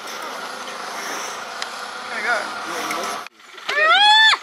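A steady rushing background noise breaks off abruptly a little after three seconds. Near the end comes a loud, high-pitched animal call that rises in pitch.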